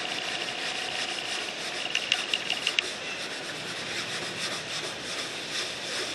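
A cotton shirt rubbed over the racing mower's body, wiping a spot clean: a steady scratchy rubbing made of quick strokes.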